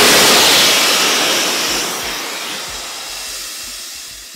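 Mammut avalanche airbag pack inflating from its compressed-gas cartridge: a loud rushing hiss as the airbag fills. It is loudest at first and fades steadily as the bag reaches full inflation.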